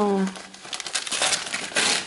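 Wrapping paper crinkling and rustling as a small gift is unwrapped by hand, a run of quick irregular crackles.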